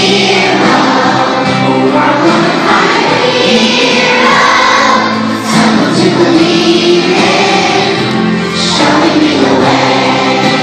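Children's choir singing a song together.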